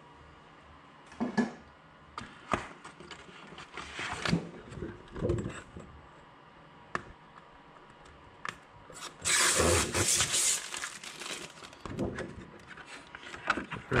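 Thin plastic sheet being handled and set into the vacuum former's frame: scattered light clicks and knocks, and about nine seconds in a loud rustling crackle lasting over a second.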